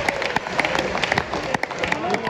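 Scattered handclapping from a small crowd of football spectators: irregular sharp claps throughout, over a background murmur of voices.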